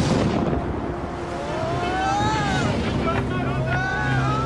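Stormy sea and wind: a rush of water at the start, then wind and churning waves, with rising-and-falling whistling glides from about two seconds in, over a low held music chord.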